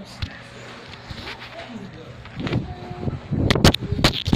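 A thrown phone hitting a hard surface and clattering: several sharp knocks in quick succession near the end.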